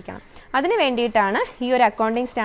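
A woman lecturing: a short pause, then speech from about half a second in. A thin, steady, high-pitched whine runs underneath throughout.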